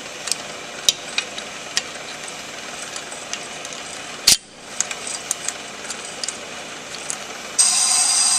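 Ammco brake lathe running steadily, with light clicks as a wrench snugs down the tool-bit clamp screw and one sharp click about four seconds in. Near the end the machine's sound abruptly changes, turning louder and brighter with a high ringing.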